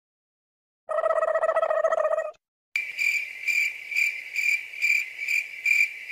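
Cricket chirping sound effect: a short buzzing trill about a second in, then a high chirp repeating about twice a second.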